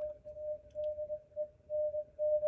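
Morse code (CW) sidetone from a Yaesu FTdx5000 transceiver as it transmits: a single steady tone keyed on and off in short dots and longer dashes.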